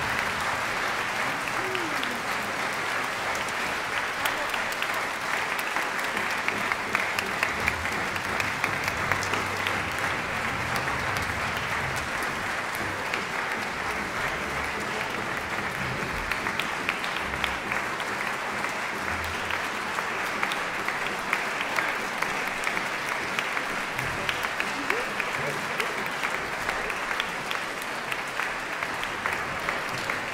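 Audience applause: a steady, dense clapping that holds at an even level throughout.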